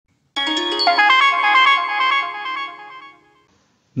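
A short electronic chime jingle, ringtone-like: a quick run of bell-like notes in the first second, then held notes that fade away about three seconds in.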